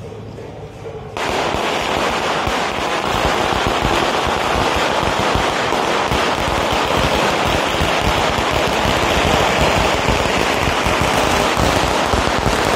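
A long string of firecrackers going off, a dense, rapid, unbroken crackle that starts suddenly about a second in.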